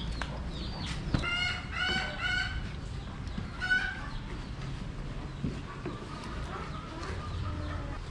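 Chicken calls: a run of loud calls between about one and three seconds in and another just before four seconds, with faint high chirps around them.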